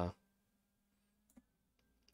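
Near silence with a few faint, separate clicks around the middle, following the tail of a man's word.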